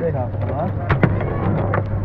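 Foosball table in play: the plastic figures on their metal rods strike the ball and clack against the table in a few sharp knocks, the loudest about a second in.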